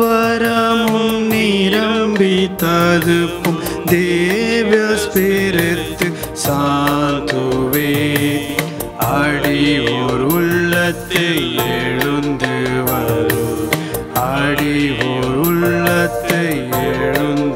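A devotional hymn: a voice sings a slow, held melody over instrumental accompaniment with a steady percussion beat.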